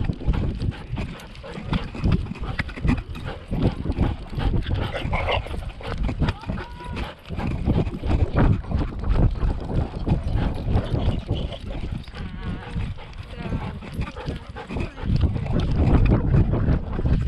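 Rubbing and knocking from a camera worn by a Siberian Husky as she moves: fur and collar brushing the microphone, with irregular thumps from her steps.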